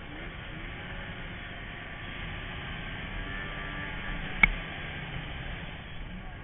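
Snowmobile running steadily under way across snow, heard from a camera mounted on the machine, with one sharp click about four and a half seconds in.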